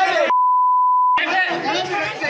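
A steady single-pitch censor bleep, lasting just under a second, replaces the sound of a crowd of men talking over one another; the crowd voices cut back in about a second in.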